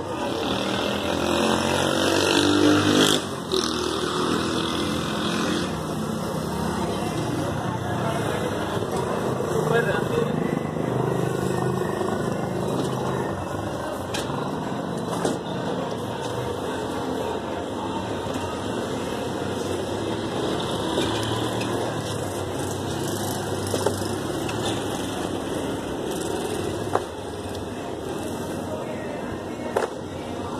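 Men's voices talking over steady outdoor street noise with vehicle sounds, broken by a few short knocks.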